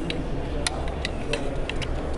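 Excalibur Bulldog 380 recurve crossbow being readied for a shot, giving a series of sharp clicks, about six in two seconds, over a steady low background hum.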